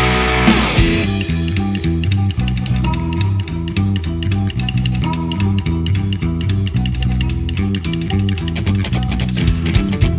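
Instrumental passage of a fast folk-punk song, with guitar, bass guitar and drum kit driving a steady beat and no vocals. The fuller sound of the first second drops back to the beat.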